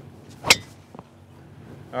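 A driver's clubhead striking a teed golf ball: one sharp, loud crack about half a second in, a full-speed drive that the hitter calls a good one.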